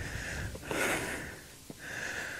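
A hiker breathing hard close to the microphone after a steep climb: a few breaths in and out, the strongest about a second in.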